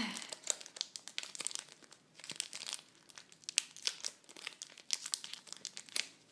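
Foil Pokémon booster pack wrapper crinkling and crackling in the hands as it is worked and pulled open, a dense run of small irregular crackles.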